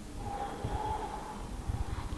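Quiet rustle and low bumps from a handheld camera being swung around, with faint breathing.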